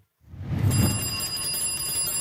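Edited-in show sound effect: a soft swell of noise rises in. Under a second in, a cluster of high, steady ringing tones joins it and holds.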